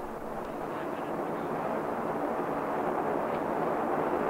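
Steady roar of the Phoebus-2A nuclear rocket reactor's hydrogen exhaust during a test run, heard from a distance, growing slightly louder.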